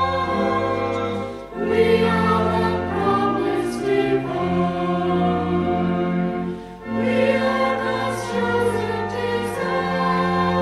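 A choir singing a hymn in long, held phrases, with two short breaks between phrases: about a second and a half in and again near seven seconds.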